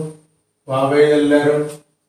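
A man chanting drawn-out Arabic letter sounds in a Qur'an-reading drill: the tail of one long held syllable just at the start, then a second held syllable of about a second, in a steady pitch.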